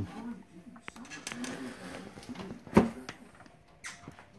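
A faint voice murmuring, then a single sharp knock about three seconds in.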